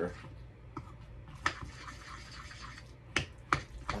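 A spoon scraping and stirring a gooey mixture in a small container, with a few sharp clicks where it strikes the container: one about one and a half seconds in, and two close together near the end.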